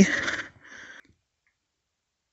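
A person's voice trailing off in the first half second, a brief hiss, then dead silence for the rest.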